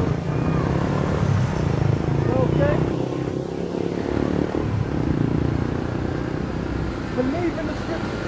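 Road traffic on a city street: a steady low engine rumble from passing vehicles, among them a red double-decker bus, with a few faint voice-like sounds over it.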